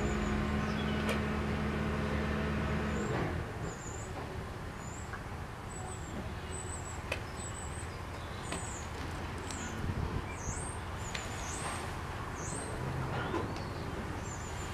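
A small bird chirping over and over in short, high-pitched calls, some of the later ones swooping down and up. Under it, a steady low motor hum stops about three seconds in.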